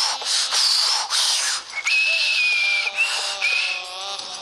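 A man blowing hard into a clay stove (chulha) to kindle the fire: three quick breathy puffs, then longer blows that whistle, one long whistle and two shorter ones.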